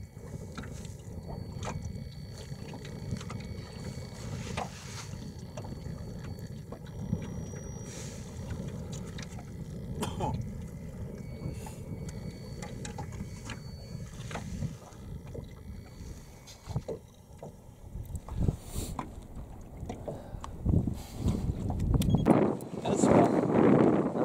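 Low, steady rumble of wind and small waves around a fishing boat on open, choppy water, with scattered light knocks. The wind on the microphone swells much louder in the last few seconds.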